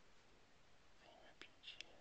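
Near silence: room tone, with a soft faint sound and two small clicks between about one and two seconds in.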